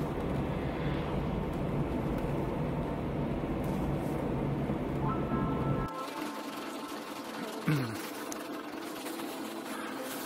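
Steady in-car road and engine rumble from a car driving at night, which cuts off about six seconds in, leaving fainter steady tones and a brief falling slide.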